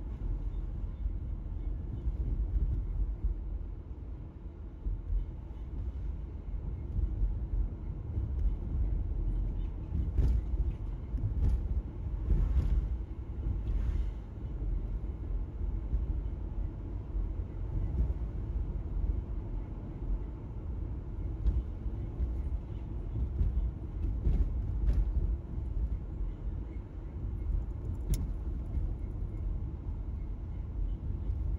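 Car driving along a road, heard from inside the cabin: a steady low rumble of tyres and engine, with a few faint brief ticks or knocks along the way.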